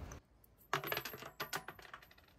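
Small metal objects clinking and jingling in a quick cluster of sharp strikes lasting about a second, with a thin high ringing tone that hangs on after them.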